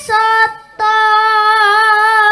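A boy singing solo and unaccompanied into a microphone: a short note, a brief break, then one long held note with a slight waver.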